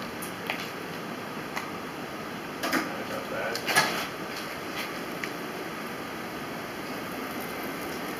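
Forklift engine running with a steady, even drone as the forklift reverses slowly, with a couple of short sounds about three and four seconds in.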